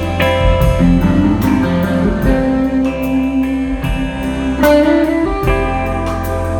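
Live rock-soul band playing an instrumental break, with an electric guitar lead of held and bending notes over bass and drums.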